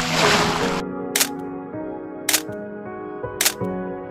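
Splash of a person jumping into lake water, dying away within the first second. Then background music with held notes and a sharp click about once a second.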